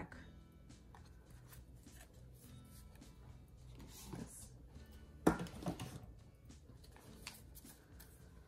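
Soft background music playing under the light rustle and clicks of tarot cards being handled and fanned, with one sharper click a little over five seconds in.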